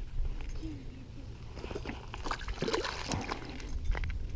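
A small bass released into a pond: light splashing of water as it drops in and swims off, with faint distant voices.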